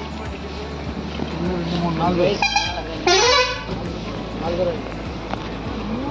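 A vehicle horn sounds twice in the middle, a short toot and then a louder, longer blast, over voices and background music.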